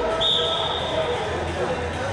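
Referee's pea whistle blowing one steady high blast of just under a second, signalling the start of par terre wrestling, over the chatter of a sports hall.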